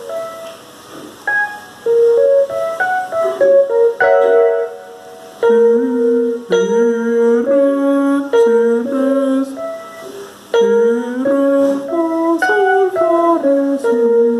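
Electronic keyboard playing a G-flat major chord with a minor seventh (G-flat dominant seventh) in first inversion. Single notes step upward and are then held together, repeated in several short phrases.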